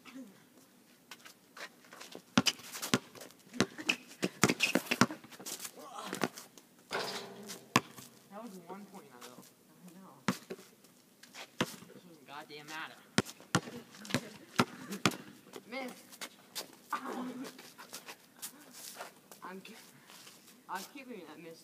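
A basketball bouncing on an outdoor asphalt court: sharp, quick dribbles, about two a second, in two runs, near the start and again past the middle, with voices calling out between them.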